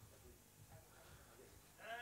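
Near silence: faint hall room tone with scattered quiet murmurs, then a short voice with a bending pitch near the end.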